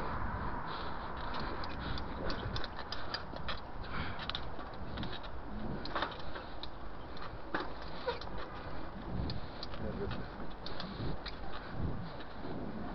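A bicycle rattling and clicking as it rolls over asphalt and paving stones, with a steady low rumble of wind and road noise on the camera microphone.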